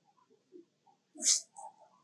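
A short, shrill animal call about a second in, followed by a brief softer squeak, over faint scattered chirps.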